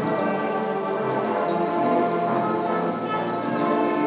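Band music with slow, sustained brass chords.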